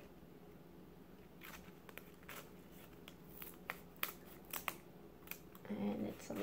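Scissors cutting through a strip of mat: a run of about a dozen sharp, irregular snips starting about a second and a half in.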